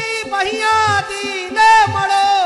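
A devotional bhajan sung in long, sliding held notes over a steady tambura drone, with hand-drum strokes underneath.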